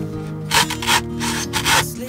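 A hacksaw cutting into a coconut, in repeated strokes about two a second, over background music.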